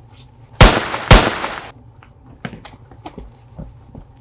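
Two gunshots about half a second apart, each loud and sharp with a short echoing tail.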